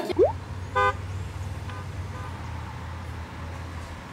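Low, steady rumble of a car cabin in slow traffic, with a short car-horn honk about a second in and two fainter brief horn-like tones a little later.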